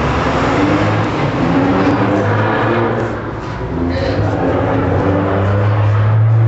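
Many people talking at once, a loud jumble of overlapping voices with no single speaker standing out, over a steady low hum.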